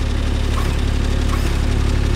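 Kubota RTV-X1100C's three-cylinder diesel engine idling with a steady low hum.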